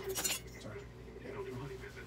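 A quick cluster of sharp metallic clinks right at the start, then only faint background sound.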